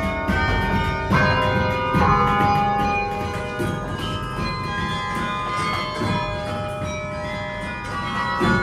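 Carillon bells played from the clavier: a melody of struck bell notes, a new note or chord about every second, each ringing on with long decaying tones that overlap the next.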